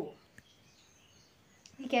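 A woman's speech stops, then a second and a half of near silence with only faint room tone and a small click, before her voice starts again near the end.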